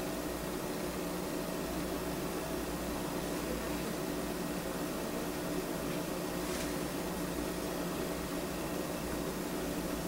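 Steady background hum with an even hiss, holding level throughout with no distinct events.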